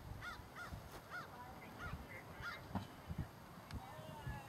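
A bird giving a run of about six short, repeated calls over the first three seconds, over a low, uneven rumble.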